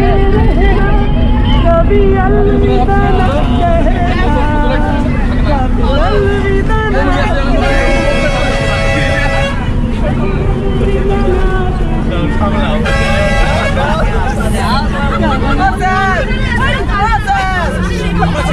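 Chatter and babble of many voices inside a moving bus over the steady low rumble of its engine, with a vehicle horn blowing twice: a long blast about eight seconds in and a shorter one about thirteen seconds in.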